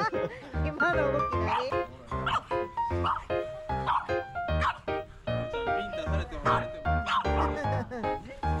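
Background music with a steady beat, with French bulldogs barking over it several times.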